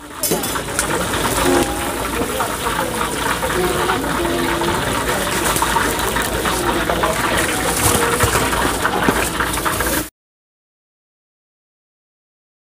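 Hot oil sizzling and crackling as battered food deep-fries in a large pan, with market chatter behind it. The sound cuts off abruptly about ten seconds in.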